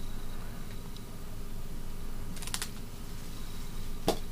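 Scissors snipping through a parrotlet's wing flight feathers: a quick cluster of a few crisp snips about two and a half seconds in, over a steady low room hum.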